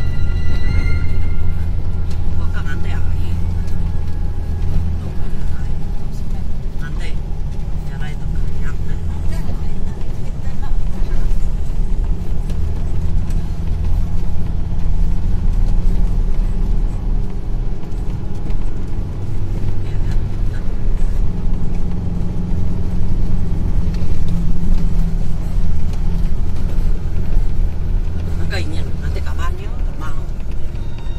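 A car driving along a rough dirt road, a steady low rumble of engine and tyres, under background music.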